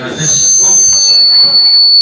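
PA system microphone feedback: a loud, steady high-pitched squeal made of several ringing tones, starting just after the beginning and holding on.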